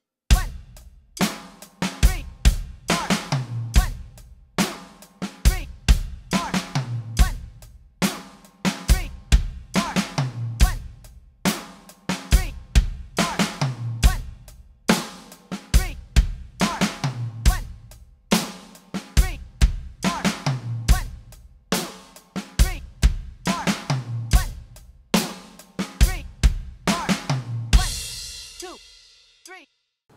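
Roland electronic drum kit playing a rock groove at 70 beats per minute: bass drum, snare and hi-hat, with a short fill closing each measure (an offbeat snare hit late in beat two, then two sixteenth notes on the snare and an eighth note on the rack tom). It repeats about every three and a half seconds and ends near the close on a crash cymbal that rings out and fades.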